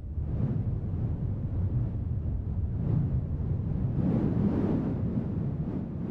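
A low rumbling rush of noise like wind, with no clear pitch, swelling in the middle and easing near the end.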